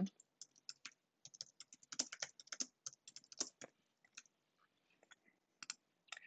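Faint typing on a computer keyboard: a quick run of keystrokes over the first few seconds, then a few isolated clicks near the end.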